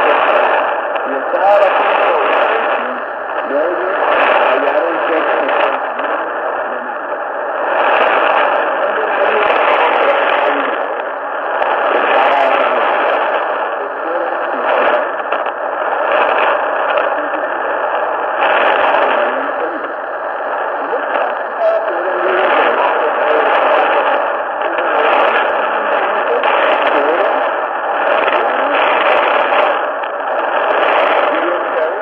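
Weak shortwave AM broadcast on 4940 kHz from an ICOM IC-R75 communications receiver: a voice buried in heavy static and hiss, with thin, narrow-band audio.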